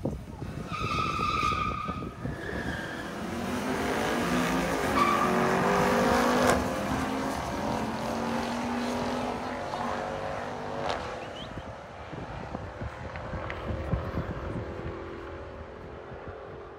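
Drag-racing street cars launching off the start line, their engines revving and rising in pitch as they accelerate, loudest about six seconds in, then fading as they run away down the quarter-mile strip. A brief high squeal comes about a second in.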